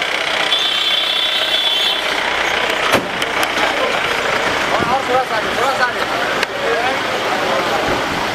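Cars and SUVs running as they move slowly through a crowded street, with people's voices around them. A high steady tone sounds briefly, from about half a second to two seconds in.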